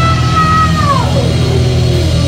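Live hardcore punk band playing loud distorted guitar, bass and drums, with a high held note over it that slides down in pitch about halfway through.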